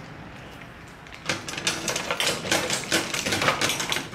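Keys and the metal door of an apartment cluster mailbox clicking and rattling as it is unlocked and opened, a quick run of sharp metallic clicks starting about a second in.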